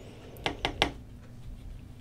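Paintbrush working watercolour paint on a palette: three quick scrubbing strokes close together about half a second in, as a mixture is thickened.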